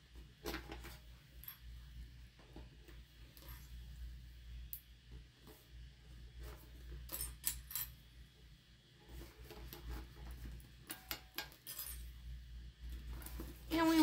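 Small plastic sewing clips clicking and rattling as they are picked up from the table and snapped onto the top edge of a tote bag: scattered, irregular light clicks over a faint low hum.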